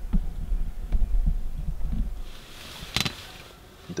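A low rumble with soft knocks for about two seconds, then a brief hiss and a single sharp click about three seconds in.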